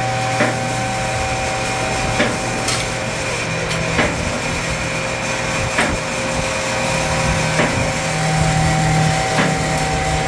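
Electric-hydraulic car lift running steadily as it raises a car body, with its safety latches clicking about every two seconds.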